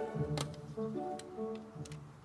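Background music: short, bouncy pitched notes, with a few sharp clicks in between.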